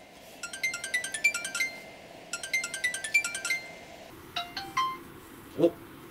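Phone ringing tone while an outgoing call waits to be answered: two bursts of rapid repeating electronic notes, about a second each, separated by a short pause. A few separate short tones follow near the end.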